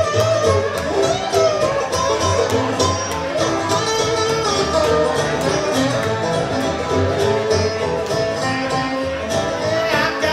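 Live bluegrass string band playing an instrumental passage: bowed fiddle carrying a wavering melody over acoustic guitar, dobro and banjo picking, with upright bass keeping a steady beat.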